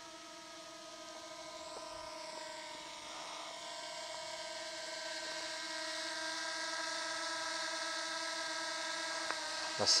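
DJI Mini 2 drone's propeller hum, a steady whine of several fixed tones, growing gradually louder as the drone flies in toward the listener.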